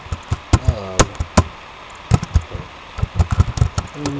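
Computer keyboard being typed on: irregular sharp key clicks, coming in quick clusters toward the end.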